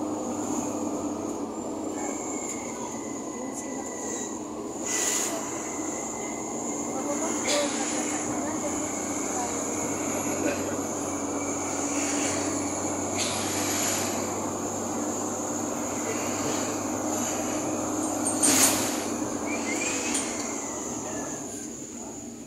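Inside a moving road vehicle: steady engine and road rumble with a rattling body, a thin high whine and a few brief clatters from bumps. The loudest clatter comes about three-quarters of the way through, and the noise eases off near the end.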